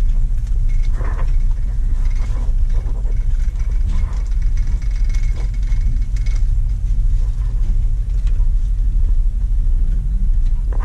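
Shopping cart rolling along a store floor: a steady low rumble with scattered light rattles and clicks from the cart.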